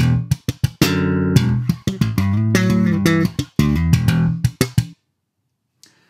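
1966 Fender Jazz Bass played slap-and-pop, recorded direct: popped double stops ring together, with slides, ghost notes and a hammer-on onto the open strings. The playing stops about five seconds in.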